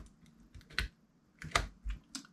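Three short plastic clicks and knocks as a USB SDR dongle is pushed into a USB OTG adapter and laid on the table, the first a little under a second in and two more near the end.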